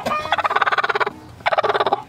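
Broody hen growling on her nest as a hand reaches toward her: two long, rattling growls, the second starting about a second and a half in. This is the warning call of a broody hen defending her nest; she bites.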